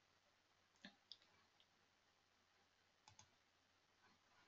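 Near silence with a few faint computer mouse clicks, about one second in and again near three seconds.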